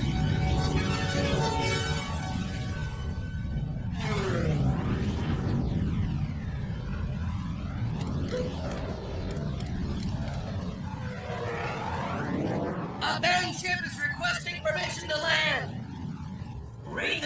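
Cartoon battle soundtrack: a continuous low rumble of cannon fire and explosions under dramatic music, with voices breaking in near the end.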